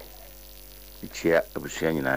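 Steady electrical mains hum on the recording, with a voice starting to speak about a second in.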